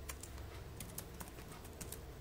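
Computer keyboard keys clicking under typing: an irregular run of light keystrokes, some close together, with a few faster clusters around the middle and near the end.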